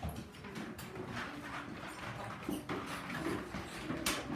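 Classroom background noise: scattered small knocks and clatter, with a few faint children's voices partway through.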